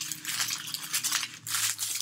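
A wrapped yarn advent package being opened by hand, with crinkling and rustling wrapping in quick, irregular bursts.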